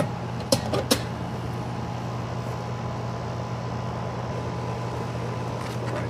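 Residential AC condenser unit running steadily, its compressor and condenser fan humming, after being restarted on a newly fitted capacitor. Two sharp clicks about half a second and a second in.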